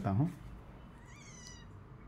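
A faint, short, high-pitched animal call about a second in, rising and then falling in pitch, over low room tone.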